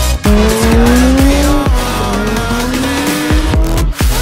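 A drifting car's engine revving in two long rising pulls, one starting just after the beginning and one near the middle, with tyres squealing as the car slides. Electronic dance music plays underneath.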